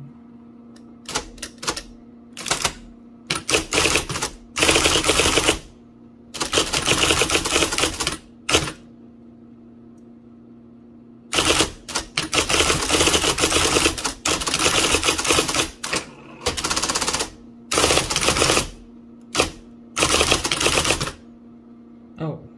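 1980 IBM Selectric III electric typewriter typing in fast runs, its golf-ball type element striking the cardstock keystroke after keystroke. The typing pauses for about three seconds midway, then resumes, over a steady hum.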